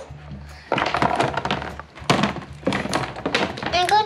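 Small plastic toy doll pieces knocking and clattering against the hard plastic of a storage bin as they are handled and sorted: several separate sharp knocks. Background music plays underneath.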